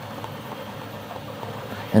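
Steady background room noise, an even hum with no distinct events. A man's voice starts right at the end.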